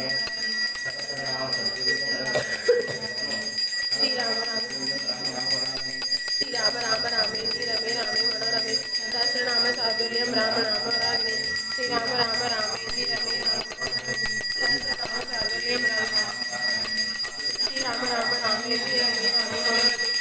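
A ritual bell ringing continuously, its high ringing tones steady and unbroken, with voices beneath it.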